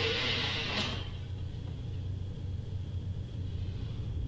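Horror film soundtrack playing at a moderate level: a steady low rumble, with a hissing noise during the first second.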